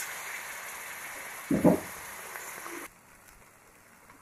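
Onion-tomato masala frying in a pan with a steady sizzle, a short knock about one and a half seconds in, then the sound drops away almost to nothing about three seconds in.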